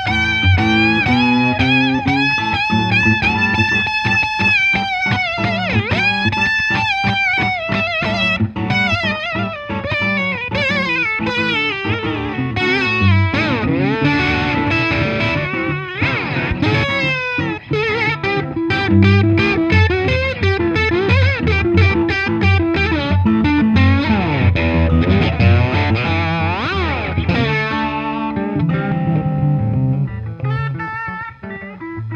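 Electric guitar jam: a lead on a gold-top single-cut guitar with P-90 pickups plays long held, bent notes with vibrato, then quicker runs and slides. A second electric guitar plays lower notes underneath.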